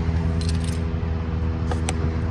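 An engine idles with a steady low hum. Over it come a few light metallic clinks, a pair about half a second in and two more near the end.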